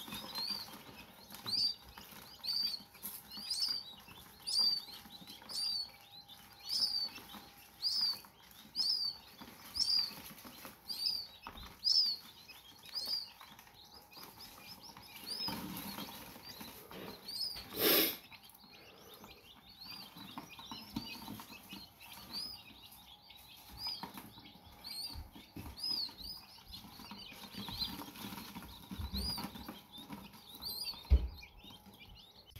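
Newly hatched coturnix and button quail chicks peeping: a high, thin chirp repeated about once a second, thinning out and growing fainter in the second half. A single sharp knock comes about halfway through.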